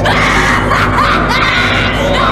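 A cartoon voice shrieking loudly, with rising cries about the start and again about a second in, over a steady low background.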